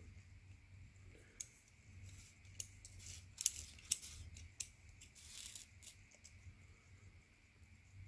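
Digital caliper's slider being run along its steel beam and fitted against a paper oil-filter element: faint scattered scrapes and small clicks, the strongest scrape about three and a half seconds in.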